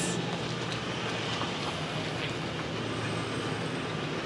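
Steady low mechanical hum with an even wash of outdoor noise.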